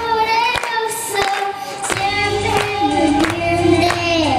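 Young girl singing a melody into a microphone over a steady instrumental backing.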